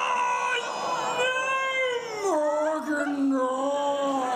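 A man's long, drawn-out wail of comic anguish, held on one voice and sliding down in pitch a little past halfway, ending as a drawn-out "no".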